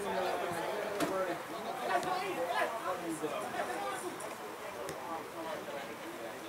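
Indistinct chatter of several overlapping voices, players and onlookers calling across an open field, with a couple of sharp knocks about one and two seconds in.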